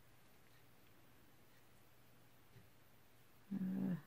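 Near silence of room tone, broken near the end by one brief pitched vocal sound about half a second long.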